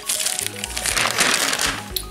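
Glossy paper pages of an advertising brochure being turned, the paper crackling and rustling, loudest in the second half, over background music.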